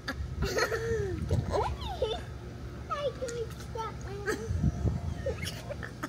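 Young children's voices: short calls and chatter with rising and falling pitch, no clear words. There are a couple of low thumps about four and a half seconds in.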